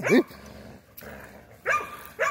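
A pit bull and a rottweiler growling as they pull against each other in a tug of war, with a short laugh at the start and a brief bark or yip-like sound near the end.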